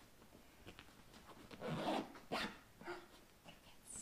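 A dress zip being pulled up the back of a snug-fitting fabric dress on a dress form, with fabric rustling. Several short sounds, the loudest about halfway through.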